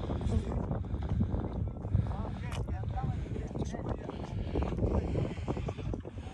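Wind rumbling on the microphone, with faint voices talking in the background.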